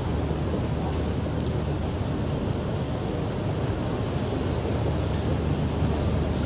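Steady low rumbling outdoor ambience with no distinct events, with a few faint high chirps over it.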